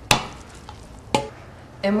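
A metal utensil clinking twice against the inside of an aluminium pressure cooker while the cooked rice is stirred. The second clink rings briefly.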